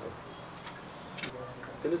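Faint room tone with a few soft mouth clicks from a man pausing between phrases; his speech starts again near the end.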